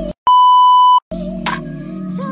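A single loud, steady electronic bleep lasting under a second, cutting into background music with singing; the music drops out just before and after it, as with a censor bleep laid over a word in the song.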